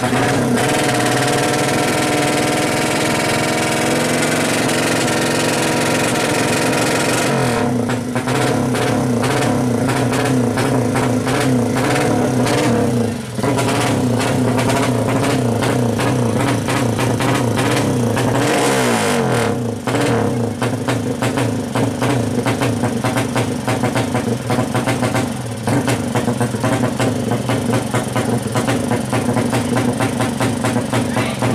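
200 cc drag-racing motorcycle engine running hard at the start line. It is revved and held high, and from about eight seconds in it stutters in rapid pulses, with two brief drops in revs.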